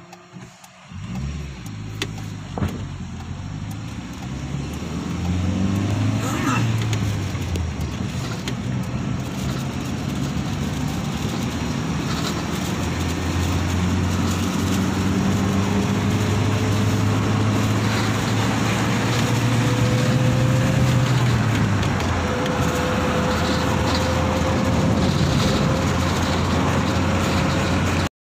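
Car engine and road noise from inside a moving car. The engine note shifts and builds over the first few seconds, then holds as a steady drone.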